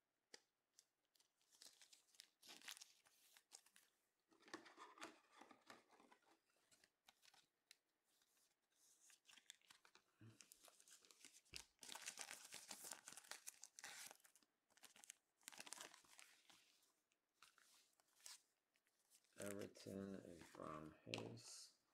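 Faint, intermittent crinkling and rustling of plastic and foil as trading cards in sleeves and wrapped packs are handled, in short bursts with a few small clicks.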